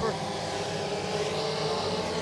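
Engines of front-wheel-drive dirt-track race cars running hard in a close pack: a steady, even engine drone with no change in pitch.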